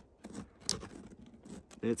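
Light handling noise from a small folding solar panel being moved and set in position: a few faint clicks and scrapes, one sharper click less than a second in.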